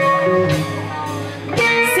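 Live band playing, electric guitar chords ringing over the band, with a new chord struck about one and a half seconds in.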